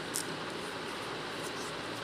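Steady hiss of a lidded pan of raw-mango chutney simmering on a gas stove on a low-medium flame, with a faint tick just after the start.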